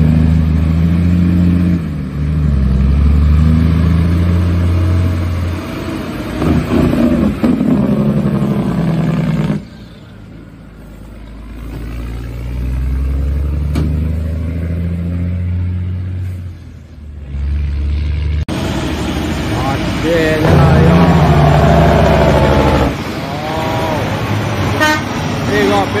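Loaded semi truck's Caterpillar C15 diesel engine pulling under load, its note rising and then dropping in steps as it shifts gears, heard in several separate takes.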